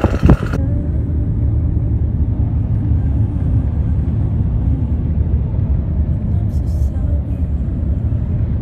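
Brief laughter, then a steady low rumble of road noise inside a moving car's cabin.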